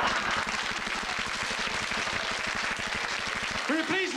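Studio audience applauding and laughing at a punchline, dense clapping throughout, with a man's voice coming in near the end.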